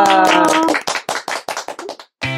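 Hand clapping, quick and uneven, thinning out toward the end. A drawn-out voice sounds over the first part and stops at under a second.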